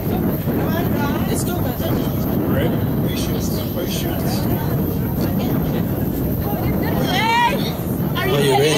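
Indistinct voices over a steady low rumble, with no band playing. A clearer voice with wavering pitch comes in near the end.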